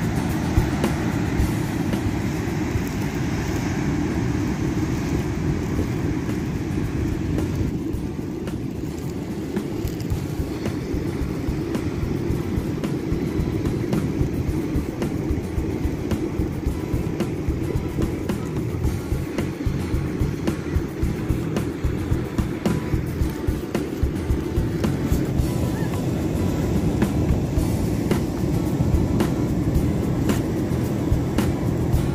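Wind buffeting a phone microphone, a steady low rumble with constant gusty peaks, over the wash of breaking waves.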